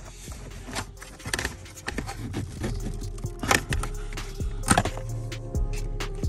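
Background music, with a few sharp plastic clicks and knocks as a C6 Corvette's lower dash trim panel is pulled off its clips.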